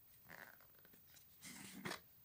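Faint handling noises of a plastic jar and a glass bowl: two brief scraping rustles, the second ending in a sharp click.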